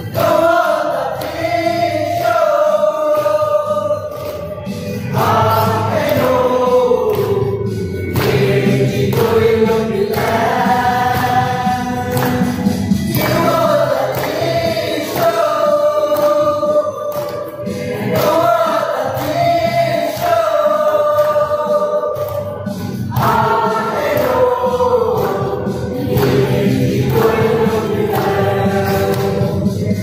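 A mixed group of young men and women singing a Mao Naga song together in unison. They sing long, held phrases, and several of them fall in pitch at the end.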